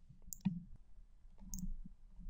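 Two faint clicks from a computer's mouse or keys, one near the start and one a little over a second later.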